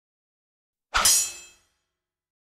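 A single metallic clang about a second in, with a short ringing tail that fades within about half a second: an editing sound effect.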